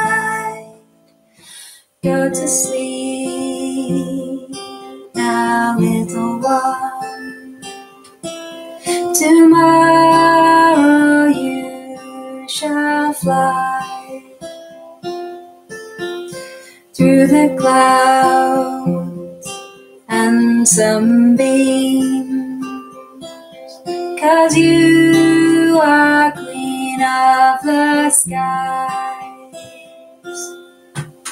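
A woman singing a lullaby to her own acoustic guitar, played with a capo on the fifth fret. There is a brief break about a second in, then the song runs on.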